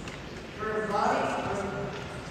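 Indistinct background talking: a voice heard from about half a second in for about a second, too unclear to make out words, over the steady hum of a large room.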